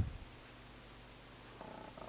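Quiet room tone with a single low click at the very start. Near the end comes a man's faint low hum just before he speaks again.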